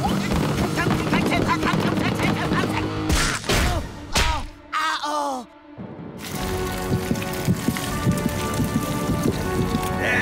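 Cartoon underscore music with comic sound effects. About three to five seconds in, a few short sounds glide down in pitch and the music drops away briefly, then comes back with a steady beat.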